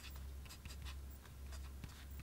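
Sailor Realo fountain pen with a broad nib writing on paper: a run of faint, short scratching strokes of the nib.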